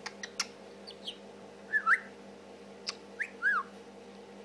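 Budgerigar chattering: soft clicks and a few short whistled chirps that glide down and up in pitch, the loudest about two seconds in.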